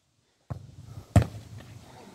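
A football struck by a foot in a penalty kick: one sharp thud a little over a second in, after a brief moment of dead silence.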